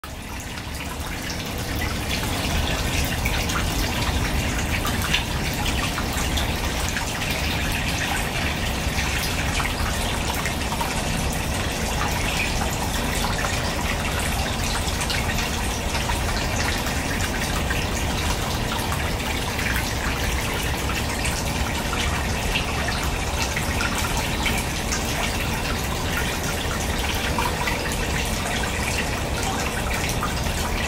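Water trickling and splashing steadily into a small fish pond, with many small drips, fading in over the first two seconds.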